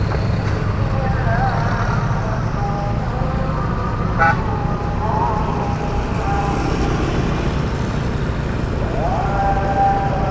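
Steady wind rush and low engine drone of a motorcycle ridden along a road, with passing traffic. A brief, sharper sound comes about four seconds in.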